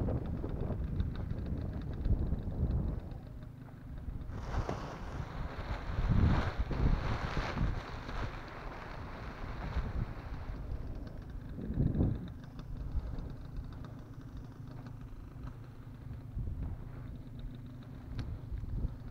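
Wind buffeting a helmet camera's microphone in gusts, with stronger swells in the middle and about two-thirds of the way through. In the middle stretch a brighter rustling hiss joins it, fitting the nylon of a paraglider canopy and its lines being handled.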